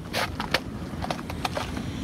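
Steady outdoor background noise with a few short, light clicks and scrapes scattered through it.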